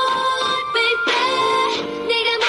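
K-pop dance track with heavily processed female vocals singing a melody over the beat.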